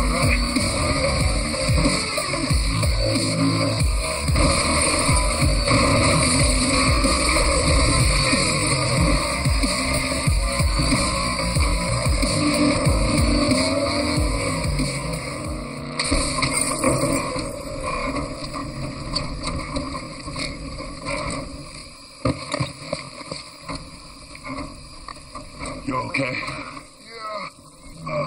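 Action-film chase soundtrack: a music score mixed with car engine and tyre sound effects, loud and dense for most of the time, thinning out near the end.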